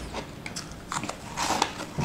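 Close-up bites and crunching of a brittle, frosty purple chunk, with the crunches coming thick about a second in.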